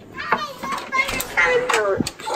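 A small child's high-pitched voice, babbling and vocalizing without clear words. It begins a moment in and ends with a drawn-out sound that falls in pitch.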